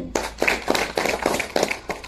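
Hands clapping: a quick, irregular run of sharp claps, dying away near the end.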